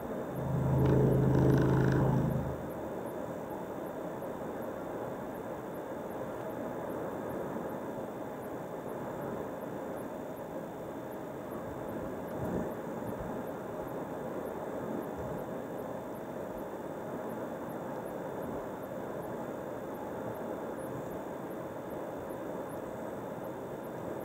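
Steady tyre and engine noise of a car cruising on a two-lane highway, heard from inside the cabin. About a second in, a loud low hum with overtones rises over it for about two seconds, then stops.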